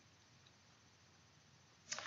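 Near silence: faint room tone, with a woman's voice starting up again right at the end.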